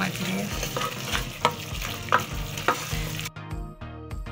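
Mushrooms, carrots and peppers sizzling in a hot metal pot as a wooden spoon stirs them. The sizzling cuts off suddenly a little after three seconds in, leaving only music.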